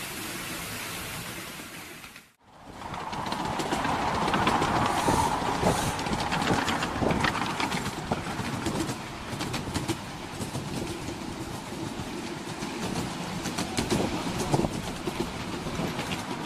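Ride-on miniature steam railway train running along its track: steady rolling noise with many quick clicks of the wheels over the rail joints. The sound breaks off briefly about two seconds in and then resumes.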